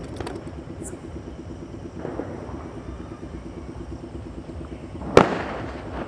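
A single sharp firecracker bang about five seconds in, trailing off quickly, over a steady low hum. A fainter thump comes about two seconds in.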